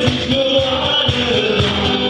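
Live folk song: a singer's voice over strummed acoustic guitar, with a cajón beating a steady rhythm of low thumps.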